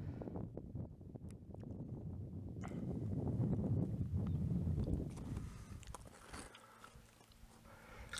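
Wind rumbling on the microphone, a low uneven noise that swells a few seconds in and dies down near the end, with scattered small clicks.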